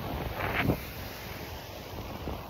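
Wind buffeting a phone's microphone on an open beach, with ocean surf washing behind it, and a short sound about half a second in.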